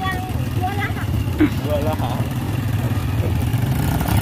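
Small motorcycle engines running steadily at low speed, a continuous low drone, with faint voices over it in the first second or so.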